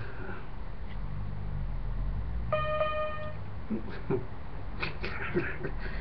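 A single note played on a small electronic toy keyboard, a clear pitched tone held for just under a second about two and a half seconds in, over a steady low hum.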